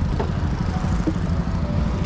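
A go-kart's small petrol engine running at low speed: a steady, rapidly pulsing low rumble.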